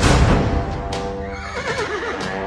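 Dramatic background music opening on a loud hit, with a horse whinnying over it in the second half: one wavering call that falls in pitch.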